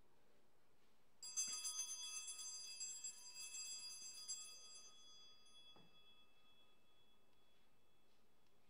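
Altar bells rung at the elevation of the host after the consecration, starting about a second in with a shimmering, jangling peal that dies away over several seconds.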